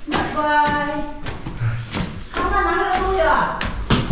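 Heavy footsteps thudding on wooden stairs, one every half second or so, as a man climbs carrying a loaded sack on his shoulder. A person's long drawn-out call in the first second and more shouting later.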